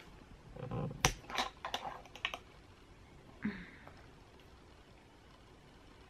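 A quick run of light clicks and taps from small objects being handled, over the first two seconds or so, then a brief faint sound and low room tone.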